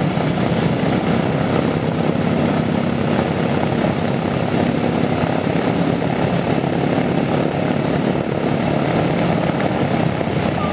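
B-17 Flying Fortress's Wright R-1820 Cyclone radial engines running with propellers turning, a loud steady drone.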